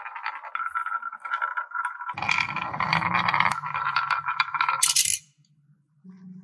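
Two marbles rolling and rattling down a wavy groove in a wooden marble-run track, a steady clatter that grows louder and deeper about two seconds in. Near the end comes a sharp clatter as they drop into a toy truck's bed.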